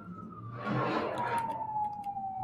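Fire engine siren wailing, its pitch sliding slowly downward. A rush of broad noise swells up in the middle.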